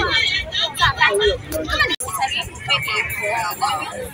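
Voices talking over crowd chatter and traffic noise of a busy street market. The sound breaks off abruptly for an instant about two seconds in, at an edit.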